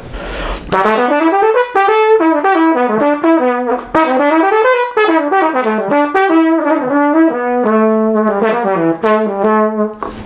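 Trumpet playing quick stepwise scale runs up and down in its low register, with held low notes near the end. This is scale practice for the low C sharp and D, with the third valve slide kicked out on those notes to bring them in tune.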